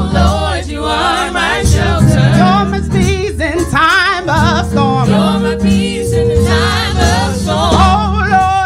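A gospel praise team singing together into microphones, voices held with a strong vibrato, over sustained low instrumental bass notes.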